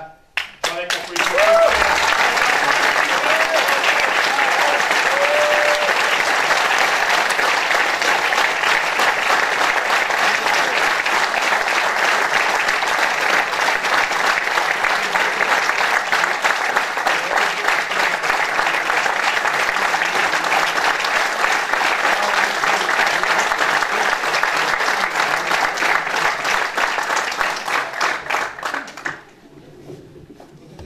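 Crowd in a theatre applauding steadily, a dense clapping that swells in about a second in and cuts off sharply near the end.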